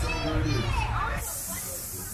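Voices from a video playing over the loudspeakers. A little past halfway they give way to a sudden, steady hiss that carries on.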